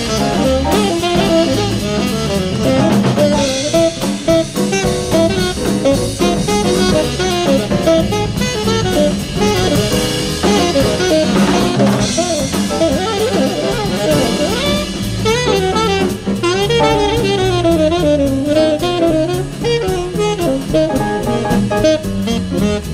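Live acoustic jazz quintet playing: a saxophone improvises in fast melodic runs over busy drum kit and cymbals, with piano and bass underneath.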